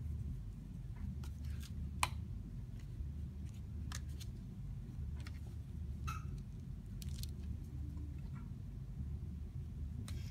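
Paper cover being folded and pressed over binder's board by hand: light rustling and crinkling of paper with scattered small clicks, one sharper tick about two seconds in, over a steady low room hum.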